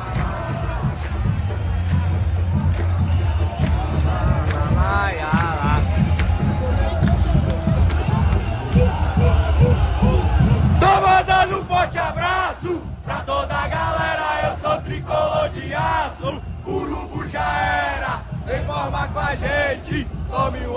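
Crowd of football supporters singing a club chant together in the stands, with a heavy low rumble beneath it that stops abruptly about eleven seconds in.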